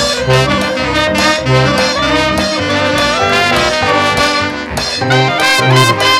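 Instrumental ensemble passage of a 1930s-style hot dance-band arrangement: clarinets, alto saxophones and cornets playing together over piano, bass clarinet and traps drums, with a steady rhythmic bass line. Every part is played and overdubbed by one musician.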